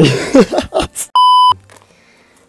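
A short burst of a man's laughter, then about a second in an edited-in bleep: a steady 1 kHz tone lasting about a third of a second that cuts off abruptly.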